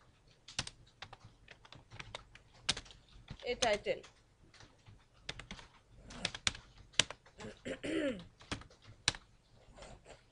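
Typing on a computer keyboard: a run of irregular keystroke clicks as a line of code is typed.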